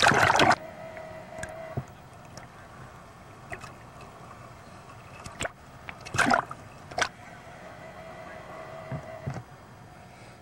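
Water sloshing and splashing around a camcorder's waterproof housing as it films from in the surf, with a loud splash at the start and another about six seconds in. A faint steady tone comes and goes under the water noise.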